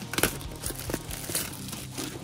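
Small product boxes and their packaging being handled and opened by hand: a few sharp crinkles and rustles of packaging material.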